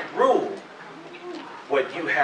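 Speech: a man's voice in short syllables, a brief exclamation about a tenth of a second in and another near the end, with a soft hum between.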